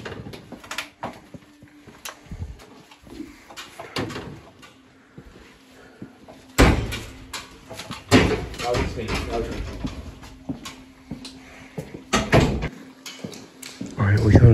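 Door handling and footsteps in an empty hallway: scattered knocks and clicks as a door is pushed open and people walk through, with one loud thump about halfway through. Low, indistinct talk underneath.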